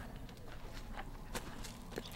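Footsteps of people walking outdoors: a few soft, scattered steps over a low steady hiss, bunched about a second and a half in.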